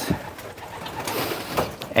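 Racing pigeons cooing in a loft, with a brief rustle about a second in.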